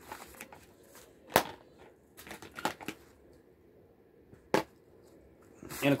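Handling noises of small plastic objects: a sharp click about a second and a half in, a few softer taps a second later, and another sharp click near the end.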